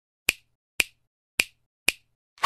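Four sharp finger snaps, about half a second apart, used as the sound effect of an animated intro title.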